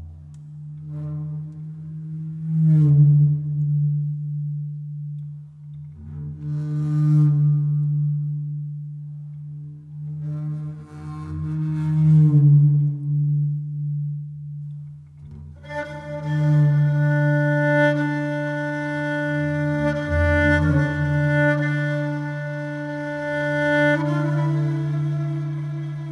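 Instrumental intro: a steady low drone whose overtones swell and fade every few seconds. About two-thirds of the way through, a Persian kamanche (spike fiddle) comes in with a long, held bowed note over the drone.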